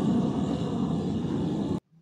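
Military jet aircraft flying overhead: a loud, steady rumble that cuts off suddenly near the end.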